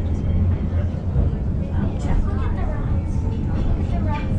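Cable-hauled Lookout Mountain Incline Railway car rolling along its steep track, a steady low rumble heard from inside the car, under passengers chatting.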